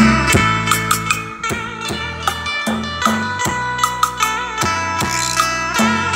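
Music with guitar, bass notes and drum hits played through a single bare 4-inch Danish mid-bass driver under test, running alone without a tweeter or woofer. The midrange sounds clear.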